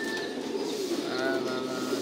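Several caged domestic pigeons cooing at once, a continuous low cooing with no pause.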